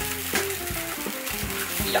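Broth boiling hard in small hot pots over gas flames: a steady bubbling, sizzling hiss with a few small clicks in it.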